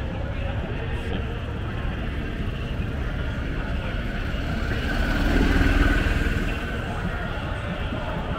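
Outdoor crowd ambience with a steady low rumble and distant voices over a public address. About five to six seconds in, a vehicle engine swells up and fades away.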